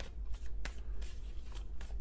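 Tarot cards being shuffled by hand: a soft, faint rustle of cards with a few light clicks.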